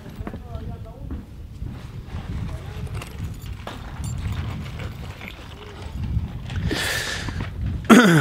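Wind rumbling on the microphone on an open roof, with faint voices of the crew and a few light knocks. A short hissing burst comes about seven seconds in.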